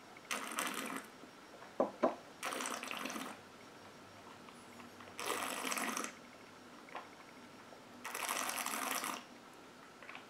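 A person breathing out through pursed lips while holding a sip of gin in the mouth: four long breaths a couple of seconds apart. Two sharp clicks come about two seconds in.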